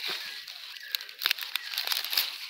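Sweet corn leaves and husk rustling and crackling as an ear of corn is pulled off its stalk by hand, with a few sharp crackles between about one and two seconds in.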